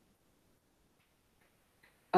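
Near silence: room tone from a video call, with a couple of very faint clicks.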